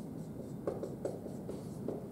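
Dry-erase marker writing on a whiteboard: several short strokes as a word is written out.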